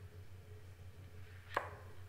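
Faint steady hum with one short, sharp click about one and a half seconds in, as a hand lifts and flexes the edge of a sheet of heavy watercolour paper off the board.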